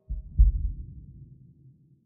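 Two deep bass thumps about a third of a second apart, the second louder, dying away over about a second and a half: a low, heartbeat-like sound-effect hit.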